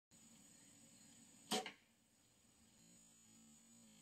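A single short, sharp bow-and-arrow shot sound about one and a half seconds in, over a faint, steady high-pitched whine.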